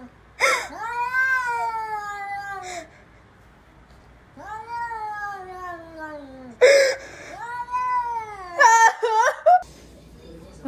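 Domestic cat yowling: three long, drawn-out calls, each rising briefly and then sliding slowly down in pitch, followed near the end by a quicker wavering run of cries. Two short harsh bursts of noise stand out, one at the start of the first call and a louder one about two-thirds of the way in.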